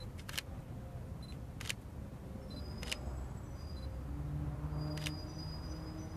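Camera shutters clicking four times, spaced a second or more apart, with short high focus beeps, while a crowd keeps a minute's silence. A faint low drone comes in during the second half.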